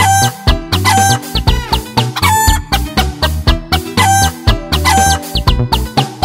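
Upbeat children's song music with a steady beat, with chicken clucking sounds repeated over it about once a second.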